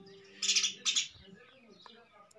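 Two short, high chirps about half a second apart, like a small bird's, heard in the background.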